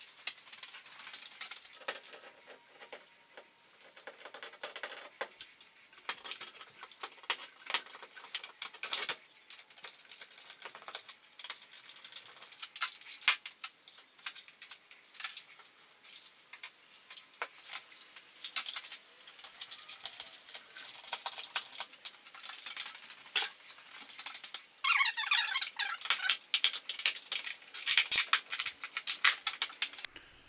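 Irregular clicks, taps and scrapes of a 4-foot LED shop light fixture and its screws being handled and fastened to a ceiling box, with a second or so of fast ticking near the end.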